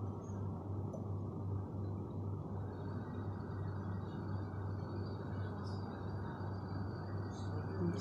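Steady low cooking noise from a pan of browned onions and spices with added liquid on a stove burner, with a low hum underneath.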